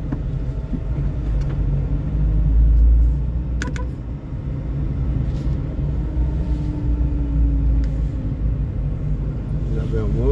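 Car driving slowly on town streets, heard from inside the cabin: a steady low engine and road rumble that swells briefly two to three seconds in, with a short click just after.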